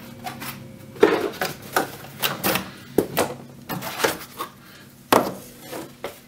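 Handling noise at a wooden workbench: a box-folding fixture being knocked and set down on the bench top and corrugated cardboard blanks being moved about, making a string of irregular knocks, taps and scrapes. The loudest knocks come about a second in and about five seconds in.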